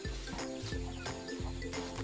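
Background music with a steady beat: held notes over a bass line and regular percussive taps.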